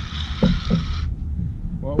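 Fixed-spool fishing reel being wound in while a hooked fish is played, with a hiss that stops about a second in, over a low rumble of wind and water around the kayak. A man's voice starts near the end.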